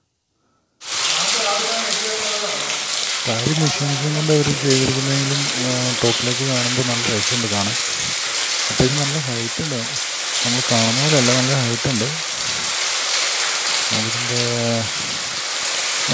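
Steady hiss of falling water, like heavy rain, starting about a second in after a moment of silence, with a man's voice coming and going over it.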